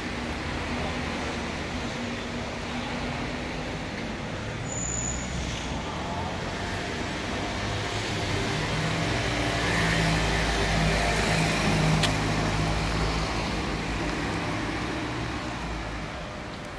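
City road traffic: cars driving by, with one vehicle's engine growing louder and passing near the middle before the sound eases off toward the end.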